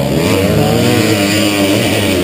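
Dirt bike engine idling, a steady run with a slight waver in pitch.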